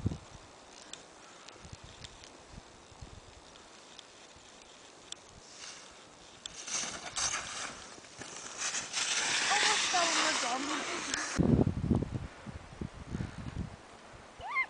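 Skis hissing and scraping over snow as a skier carves past close by. The sound swells for about five seconds in the middle, then a brief low rumble follows.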